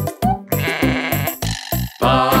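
A sheep's bleat, starting about half a second in and lasting nearly a second, over upbeat children's music with a steady beat.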